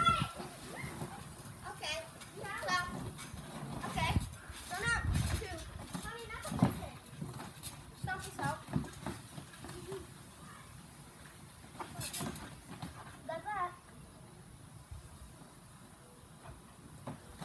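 Children squealing and laughing in short high-pitched bursts while playing on a trampoline, with a few dull thumps from the mat about four to five seconds in. It quiets down near the end.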